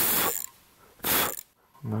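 Two short puffs of breath blown at the micro drone's propeller, about a second apart, to test whether the propeller now spins freely without friction.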